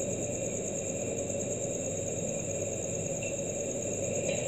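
Steady background noise: a low, even hiss with a thin, continuous high-pitched whine over it.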